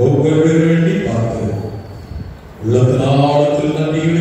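A man's voice intoning in a chant-like, sing-song way through a microphone: two long phrases on held, nearly level pitches with a short pause between them.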